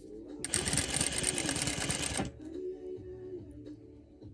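Sewing machine running fast in one burst of about two seconds, the needle stitching lace appliqué onto tulle, then stopping abruptly.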